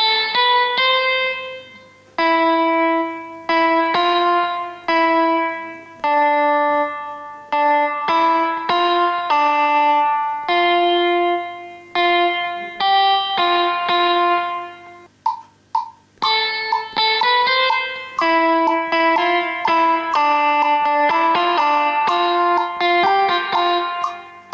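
GarageBand's Classic Clean electric guitar on an iPad, played one note at a time on the touch-screen fretboard with light reverb. A repeating plucked melody line of ringing, decaying notes stops briefly about two-thirds of the way through, with a few soft taps, then carries on.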